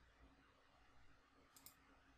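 Near silence: faint room tone with a low hum, and two faint clicks about one and a half seconds in.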